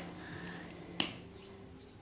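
A single sharp click about a second in, over a faint steady hum.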